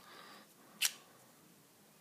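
A faint rustle of handling, then one short sharp click a little under a second in: the insert of an S.T. Dupont MaxiJet lighter being pushed into its case.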